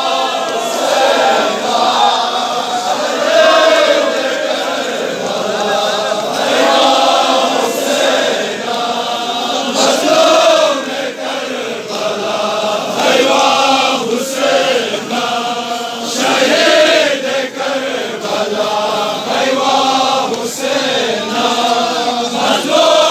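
A crowd of men chanting a mourning lament together in loud, repeated rising-and-falling phrases, with scattered sharp slaps of hands beating on chests (matam).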